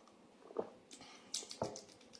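Someone sipping hot broth from a mug and tasting it: two gulping swallows about a second apart, with small wet lip smacks between them.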